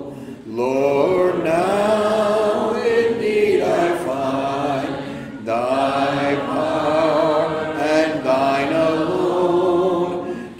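A hymn sung a cappella, a man's voice leading at the microphone, in phrases of about five seconds with short breaths between.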